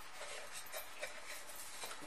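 Faint rustling and rubbing of a paper towel wiping dry the clear plastic water reservoir of a portable water flosser, with a light tap about a second in.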